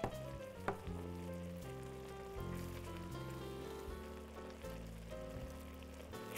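Soft background music over a large pan of paella rice sizzling on the hob as it is stirred with a wooden spoon, with a couple of light clicks in the first second.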